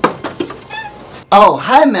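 A few quick knocks on a wooden door, then about a second later a voice calling out loudly with a long, wavering pitch.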